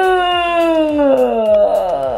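A young woman's long, loud, drawn-out moan, falling steadily in pitch and trailing off near the end: an exasperated groan over sitting through a two-hour class.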